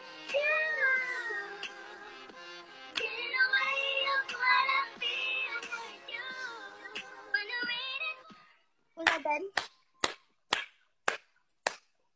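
A woman singing a pop melody with backing music; it stops about three-quarters of the way through, followed by short bursts of laughter.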